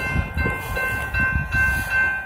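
Kansas City Southern freight train passing through a grade crossing at speed: a heavy, uneven rumble of wheels and cars, with a few steady high tones held above it.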